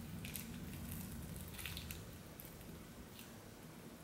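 A magnet wand drawing a magnetic face mask off the skin: a few faint clicks and crackles as the mask sticks to the magnet, scattered over the seconds above a low room hum.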